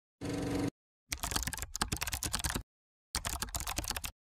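Computer keyboard typing sound effect: two rapid runs of key clicks, the first about a second and a half long and the second about a second, after a short steady tone at the very start.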